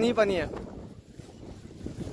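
Wind buffeting a phone's microphone, a low rumble that stays after a short spoken word at the start.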